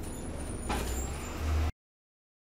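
Dennis Dart SLF bus's diesel engine idling with a steady low drone, heard from inside the bus. A short hiss of air from the bus's pneumatics comes about two-thirds of a second in, and the sound cuts off abruptly near the end.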